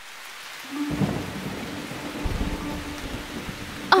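Cartoon storm sound effect: steady rain hissing, with a low roll of thunder coming in about a second in and swelling in the middle.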